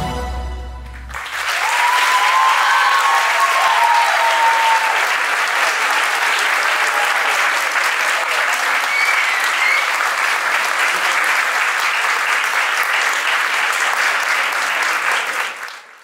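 The last note of the music fades in the first second, then an audience claps steadily for about fifteen seconds, with a few cheers and whoops rising over the clapping about two to five seconds in and again about nine seconds in. The applause cuts off abruptly at the end.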